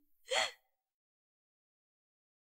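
A man's brief gasp of surprise near the start.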